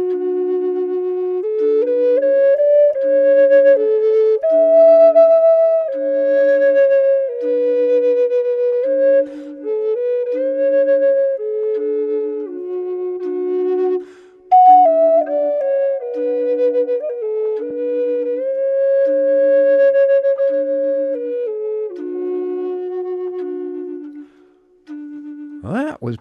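Native American flute playing a slow, stepwise melody over a looped recording of a lower flute's bottom note, which repeats in short pulses about once a second. The pairing is a test of whether two flutes in different keys sound consonant together; the combination sounds "pretty good".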